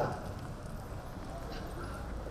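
A pause in a man's amplified speech. The last of his word trails off at the very start, then only a steady low hum and faint open-air background noise are heard.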